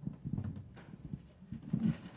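Faint, muffled voices murmuring in the room, with a short, slightly louder voiced sound near the end.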